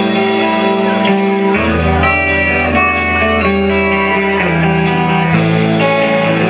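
Live blues-rock band playing an instrumental passage: electric guitars and bass, with a harmonica played into the vocal microphone. The bass drops to a deep held note about a second and a half in and comes back up near the end.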